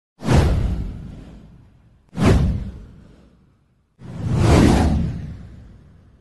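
Three whoosh sound effects for an animated title card. Each one is a sudden rushing swell with a deep low end that fades out over about a second and a half. The third builds in more slowly and lasts longer.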